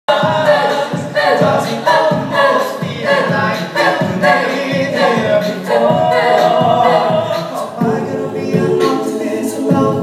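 A cappella vocal group singing in close harmony over a steady beat about twice a second, amplified through the hall's stage speakers.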